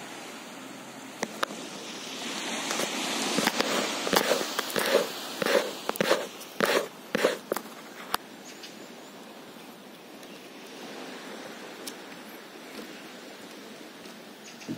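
Footsteps on wooden deck boards: a run of knocks and thuds, about two a second, for a few seconds in the first half. They sit over a steady background hiss.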